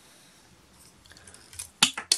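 Plastic parts of a Transformers The Last Knight Premier Edition Bumblebee figure clicking sharply, three or four times in the last half second, as a piece is unclipped from its back.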